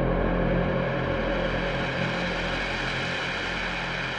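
Beatless ambient electronic drone in a techno mix: a steady low hum under a hissing wash, slowly fading.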